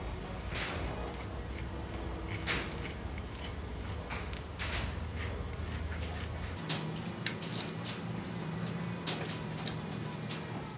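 Plastic uncapping scratcher raking the wax cappings off a honeycomb frame: irregular short scratchy strokes over a low steady hum.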